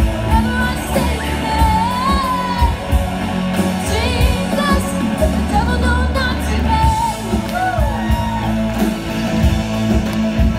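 A live band playing a song: drum kit, electric guitar and a steady bass under a singing voice.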